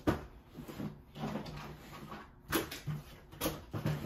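Handling noise as camera gear and other items are packed into a bag: a few sharp knocks and rustles, the sharpest right at the start and about two and a half and three and a half seconds in.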